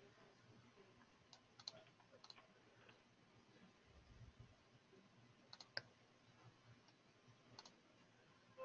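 Near silence with a few faint, sharp computer clicks, some in quick pairs, about a second and a half in, near six seconds and again near the end.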